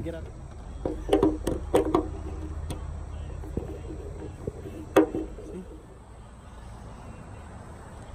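Clicks and knocks of a boat's all-round anchor light pole being pushed into its mounting socket, with one sharp click about five seconds in. A low rumble of wind on the microphone runs underneath.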